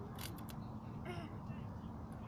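Rustling crinkle of a plastic parcel bag being torn open, a few sharp crackles near the start, over a steady low outdoor rumble; a short pitched call, like a distant voice, is heard about a second in.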